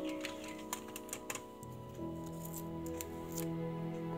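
Soft background music with long held notes, over a few faint clicks and taps from hands pressing a printed label strip onto a metal watercolour tin.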